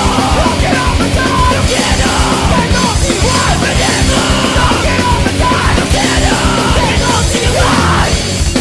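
Hardcore punk song with shouted vocals over a loud, dense band of electric guitars and drums. The shouting stops shortly before the end, leaving the band playing.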